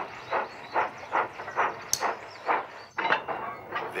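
Steam locomotive chuffing in a steady rhythm of about two puffs a second, with one sharp click about halfway through.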